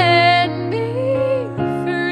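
A woman singing a slow ballad while accompanying herself on a grand piano. She holds a note with vibrato at the start, then sings a lower phrase, over sustained piano chords that change about one and a half seconds in.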